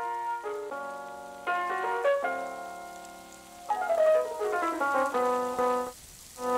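Instrumental background music: keyboard notes in falling runs, with a chord held for about a second and a half in the middle, and no drums.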